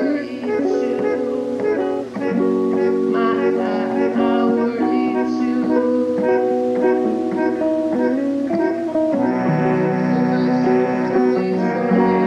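Acoustic guitar picking and strumming chords in a lo-fi, tape-recorded song, with no singing. About nine seconds in, fuller held chords come in underneath.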